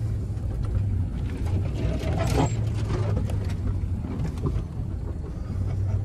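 Ford Super Duty pickup's engine running at low speed, heard from inside the cab as the truck crawls up a rocky trail, with scattered knocks and rattles.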